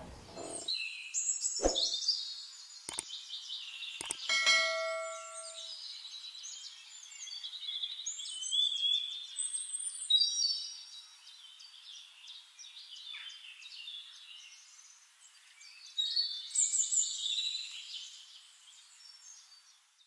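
Birds chirping and trilling in high-pitched calls, with a few sharp clicks and a single bell-like ding about four seconds in. The calls come in louder clusters around the middle and again near the end, then fade out.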